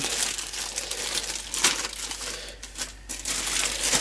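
Thin clear plastic bag crinkling and crackling irregularly as it is handled, with one sharper crackle about one and a half seconds in.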